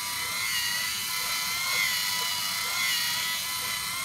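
LEGO Mindstorms EV3 motors whining steadily as they drive the drawing machine's two large gears, the pitch wavering slightly.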